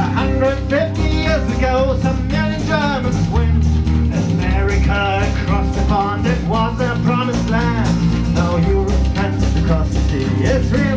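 A shanty choir singing a sea shanty with guitar accompaniment and a steady beat.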